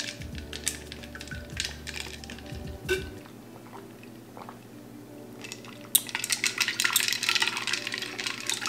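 Ice cubes clinking against a glass jar as a drink is stirred with a straw. Scattered clinks come first, then a quieter stretch of about three seconds, then fast, dense rattling from about six seconds in.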